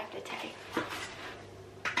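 Faint clink and scrape of metal cutlery on a dinner plate, with one short click a little under a second in.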